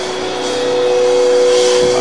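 Keyboard music holding a steady chord. A higher note joins about half a second in and swells a little.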